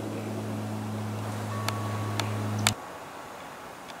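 Low, steady drone of a Lockheed Martin AC-130J's four turboprop engines and propellers overhead, cut off abruptly about two-thirds of the way through with a sharp click, leaving only a faint hiss. A couple of smaller clicks come just before the cutoff.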